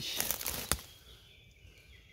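Dry twigs and leaf litter rustling and crackling in close-up as someone moves through dead brush, with a sharp twig snap about 0.7 s in. After that the sound settles into a quiet woodland hush with faint high calls.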